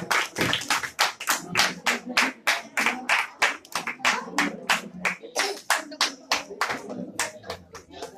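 A group of people clapping steadily in rhythm, about four claps a second, with voices faintly underneath.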